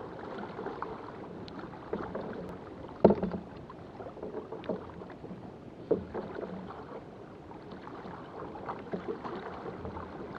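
Choppy sea water splashing and lapping against a kayak's hull, with a few sharp knocks; the loudest knock comes about three seconds in and another near six seconds.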